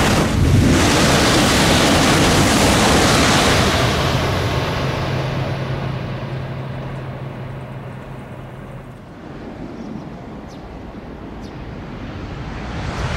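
E956 ALFA-X Shinkansen test train rushing past at high speed: a loud, even roar of air and wheels that fades away over several seconds. Then a quieter stretch with wind on the microphone, and near the end the rush of an approaching train begins to build.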